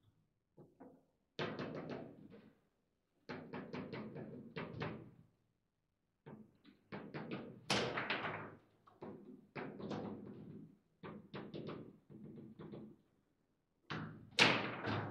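Table football in play: quick runs of sharp clacks and knocks as the ball is struck by the rod figures and bounces off the table walls and the rods are slid and snapped. It comes in bursts a second or two long, with short quiet gaps between them.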